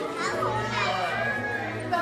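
A young child's high voice, rising and falling, with a long held high note in the second half, over the chatter of a busy room.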